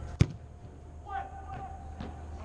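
A soccer ball kicked hard once: a single sharp thud just after the start, as a cross is whipped into the box.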